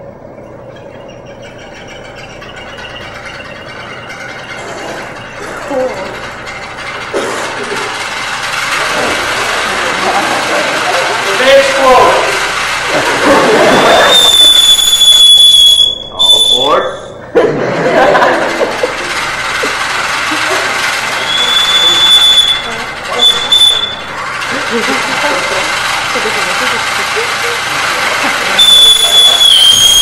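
Toy steam engine charged with liquid nitrogen, its boiler hissing as the boiling nitrogen vents, the hiss swelling over the first several seconds and staying loud. A high steady whistle from the boiler top sounds three times, in the middle, later on and near the end. Voices are heard in the middle.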